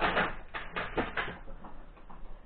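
A quick run of short knocks and clatters from things being handled, bunched in the first second or so, then fading to quieter handling noise.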